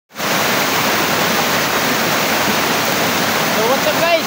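Waterfall pouring down a rock face: a loud, steady rush of water.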